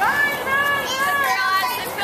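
Young children's high voices calling and shouting, with several drawn-out calls.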